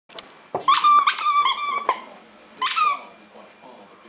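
A squeaky toy ball squeaked by a puppy biting down on it: a loud run of squeaks from about half a second in to just before two seconds, then one more short squeak near three seconds.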